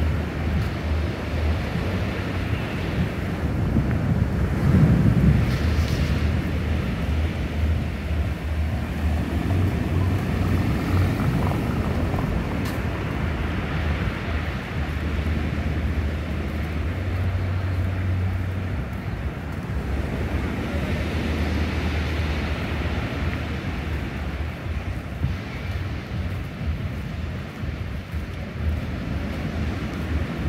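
Wind buffeting the microphone in a low, unsteady rumble, rising and falling in gusts, with the strongest gust about five seconds in.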